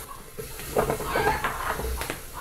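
Chopped garlic sizzling as it drops into hot rendered bacon fat in a pressure cooker, with a wooden spoon stirring it in.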